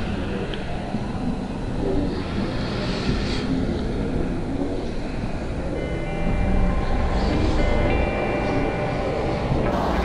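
Steady low rumbling outdoor street noise. About six seconds in, background music with long held notes comes in over it.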